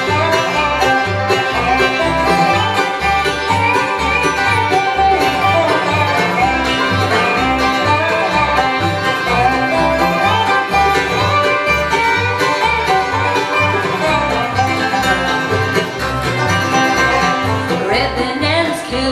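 Live bluegrass band playing an instrumental break without singing: banjo and fiddle lead over strummed acoustic guitars and an upright bass plucking a steady beat of about two notes a second.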